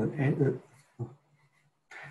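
Speech only: a man's hesitant "uh" sounds, two drawn-out fillers with a short pause between.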